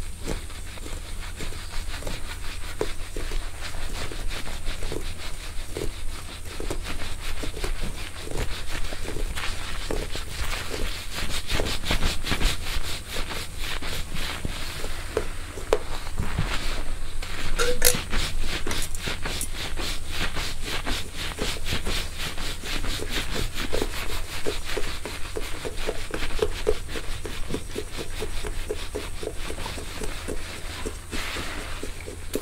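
Wire scalp massager's thin metal prongs rubbed and drawn through a mannequin's wig hair close to the microphone: dense, rapid crackling scratches that get busier from about a third of the way in, over a steady low hum.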